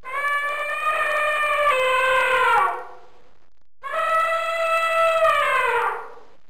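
Elephant trumpeting twice: two long, loud calls about a second apart, each dropping in pitch as it ends.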